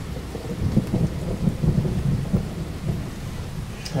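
Wind and rain outdoors: an uneven low rumble of wind buffeting the microphone over a faint hiss of rain.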